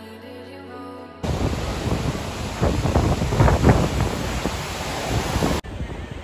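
Background music for about the first second, then a sudden cut to loud ocean surf breaking, heavily buffeted by wind on the microphone, which cuts off abruptly near the end.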